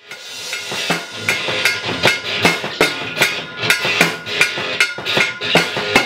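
Rock music starting abruptly: an electric guitar strummed hard in a driving, even rhythm, with sharp percussive hits about two and a half times a second.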